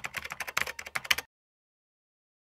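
Computer-keyboard typing sound effect: a fast run of key clicks that cuts off suddenly a little over a second in.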